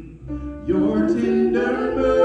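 Amplified singing of a worship song into a handheld microphone, with a short break near the start before the sung line resumes with held notes.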